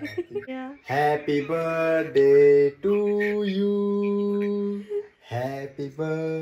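A voice singing a slow, drawn-out tune in long held notes. The longest note lasts about two seconds near the middle.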